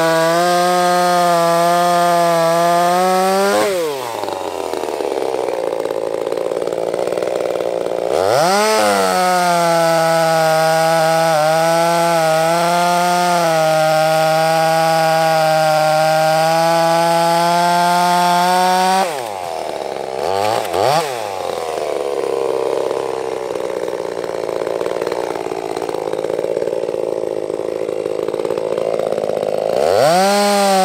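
Ported Echo CS-355T 35cc two-stroke chainsaw at full throttle cutting through sugar maple. It drops to idle about four seconds in, revs back up and cuts steadily again until a little past halfway, then idles with a couple of quick throttle blips before revving up again at the very end.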